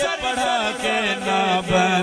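A man's voice singing a naat (devotional poem in praise of the Prophet) through a microphone. It bends through ornamented turns at first, then holds one long steady note from just under a second in.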